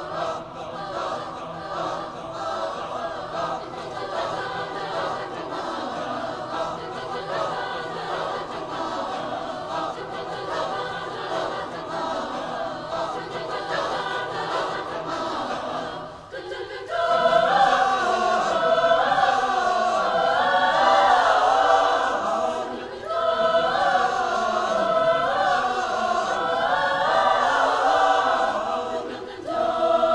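Mixed high school choir singing a traditional Filipino folk song, held softly at first, then much louder and fuller after a short break about halfway through.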